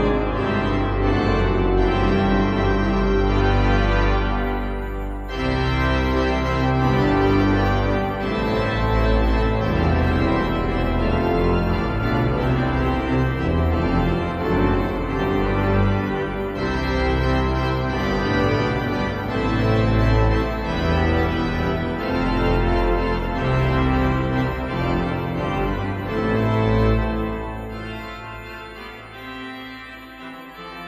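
Sampled pipe organ of St Mary-le-Bow, played through Hauptwerk, sounding a festive C-major postlude on a full registration with heavy pedal bass. From a few seconds in, a Zimbelstern (the instrument's "bow bell") tinkles faintly high above the chords. The sound tapers off over the last few seconds as the piece closes.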